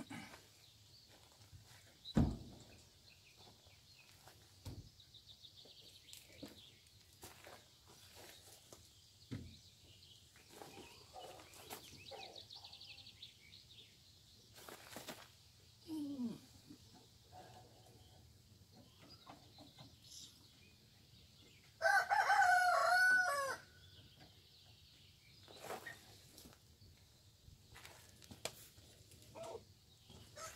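A rooster crows once, loudly, for about a second and a half, late in the stretch. Before that, faint scattered knocks and clatter come from trays and wood being handled at the smokehouse.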